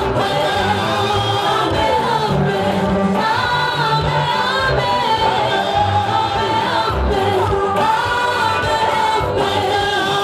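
A vocal group singing a gospel song in harmony through microphones and a PA, with a steady low bass under the voices.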